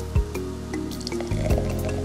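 Background music with a steady beat, over sparkling wine being poured into a glass and fizzing.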